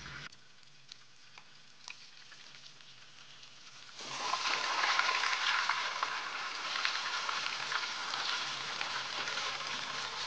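Whole fish frying in hot oil in a pan: a steady, loud sizzle that starts abruptly about four seconds in. Before it, quiet with a few faint clicks.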